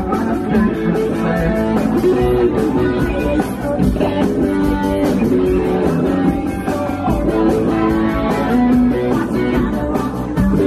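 Live rock band playing loud and amplified: electric guitars, bass guitar and drums, with a singer at the microphone.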